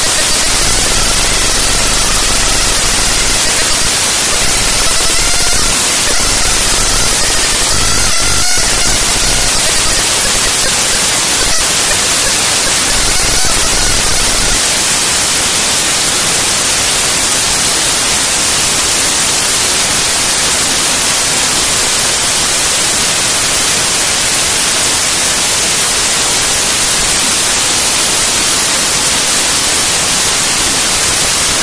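Raw-data glitch track: loud, dense static like white noise. Faint wavering tones sit in it for the first several seconds, and a low rumble under it drops out about halfway through.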